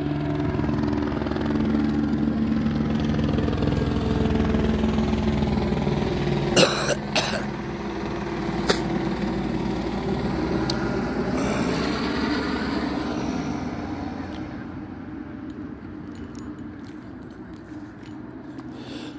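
A helicopter flying low overhead, its rotor and engine getting louder, peaking about a third of the way through, then fading away as its pitch falls. A few sharp clicks partway through.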